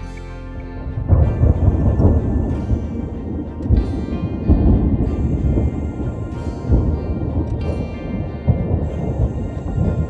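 Thunder rolling in a long, deep rumble that swells and fades in waves, starting about a second in, over soft background music.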